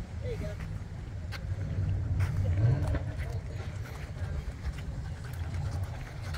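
Low, fluttering rumble of wind on the microphone, with a few light clicks.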